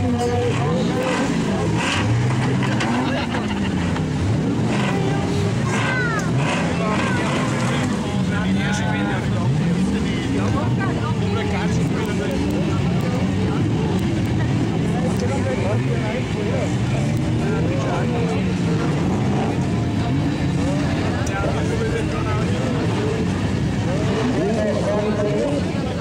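Several stock-car engines revving hard together, their pitch rising and falling again and again as the cars accelerate and lift off.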